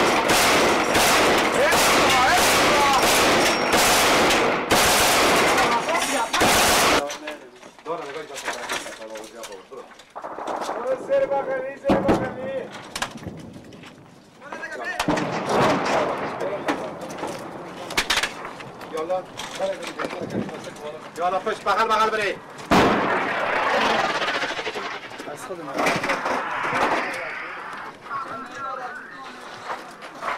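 Heavy, continuous automatic gunfire for about the first seven seconds, the shots running together, then breaking off into a few scattered single shots among shouting voices.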